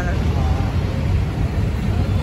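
Car engine idling: a steady low rumble.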